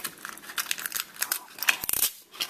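Clear adhesive tape being handled and pulled from a small plastic tape dispenser: a quick run of crackly clicks and crinkles.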